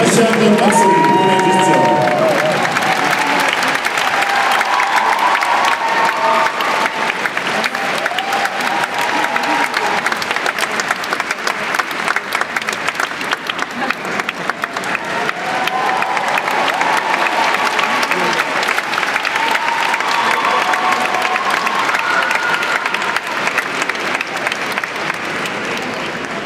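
Large audience applauding continuously, a dense, steady patter of many hands clapping that eases slightly toward the end.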